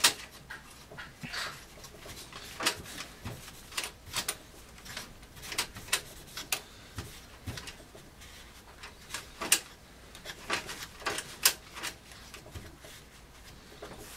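A cloth wiping the motherboard around the CPU socket inside an open desktop PC case, heard as irregular short rubs and scratches with a few light taps.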